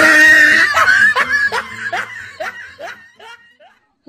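A person laughing loudly, one burst that breaks into a string of short pulses and fades out over about three seconds.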